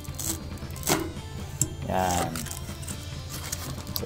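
A Quaff PVC card die cutter's lever pressed down to punch out a calling card, with a single clunk about a second in, over background music.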